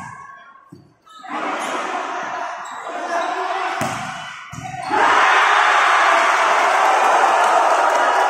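Volleyball rally: the ball is hit with a few sharp smacks over crowd and player shouting, then the crowd breaks into loud cheering about five seconds in as the point is won.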